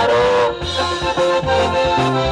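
Live basesa dance music from a band: accordion melody over a drum-kit beat and bass line.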